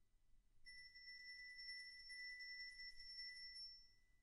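A single high, bell-like note on tuned metal percussion, held steady for about three seconds and then stopped short, over the faint ring of the same pitch left from an earlier stroke.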